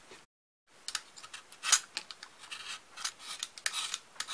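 Utility knife blade shaving bark off a maple branch in a quick series of short, irregular scraping strokes. A brief silent gap comes near the start.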